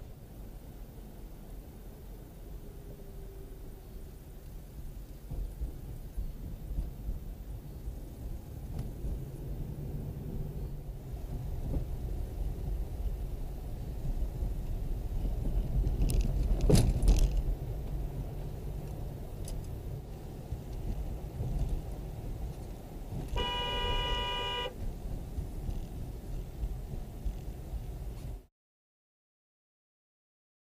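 Road and engine rumble inside a moving car, picked up by a dash camera, with a loud thump a little past halfway. A car horn sounds for about a second and a half near the end.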